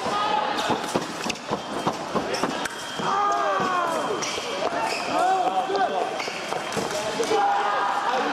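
Sabre fencing footwork: fencers' shoes squeaking and stamping on the piste, with many sharp clicks and knocks from feet and blades.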